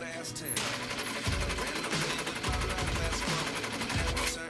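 Sewing machine stitching, with a brief pause at the start before it runs on steadily, under background music whose deep bass beat comes in about a second in.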